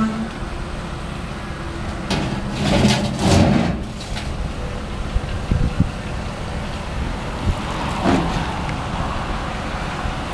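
A pickup truck's engine running as it backs down the tilted steel deck of a tandem-axle tilt-bed trailer and rolls off onto the ground. There is a louder rumble a few seconds in and a few short knocks later.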